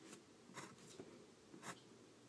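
Faint scratching of a pencil on paper in several short strokes, as small guide lines are sketched.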